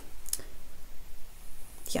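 A few soft clicks in a quiet room, a pair about a third of a second in and another near the end.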